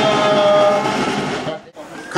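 A group of women singing with brass-toned backing music, holding a long final chord that fades out about a second and a half in.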